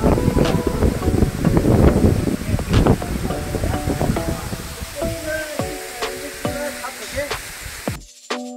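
Wind on the microphone and rushing waterfall water, heavy at first and fading over the second half. Background music with held notes and occasional drum strikes comes through more clearly toward the end.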